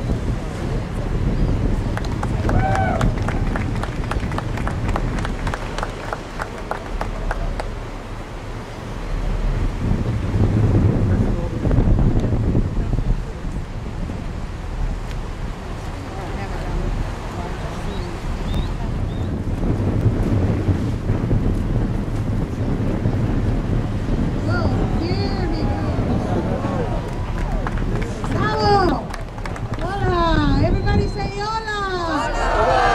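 A tour boat's engine running with a steady low rumble, with wind on the microphone and indistinct passenger voices. The voices grow clearer near the end.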